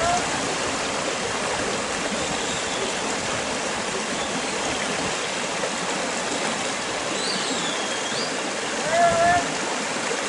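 A sheepdog handler's shouted calls and whistle over a steady rushing noise. A short rising call right at the start, a high gliding whistle about two seconds from the end, then a louder drawn-out call just after it.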